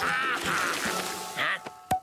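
Cartoon soundtrack: a character laughing over background music, a short "huh?" about a second and a half in, and a single sharp pop just before the end.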